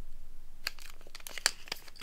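Foil wrappers of 2024 Score football card packs crinkling as the packs are handled, with a run of short sharp crackles starting about two-thirds of a second in.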